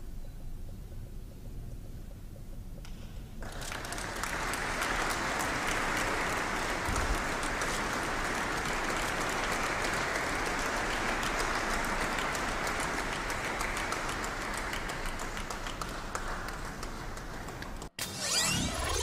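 Audience applauding. The room is quiet for the first few seconds, then the clapping starts about three seconds in, holds steady, and cuts off suddenly near the end.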